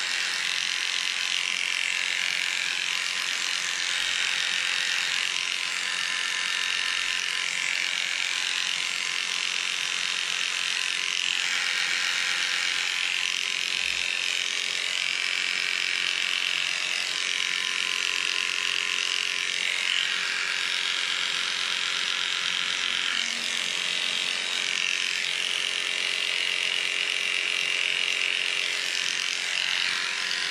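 Electric dog-grooming clippers running steadily as the blade cuts through a dog's coat. The buzz shifts slightly in tone every few seconds as the blade moves through the hair.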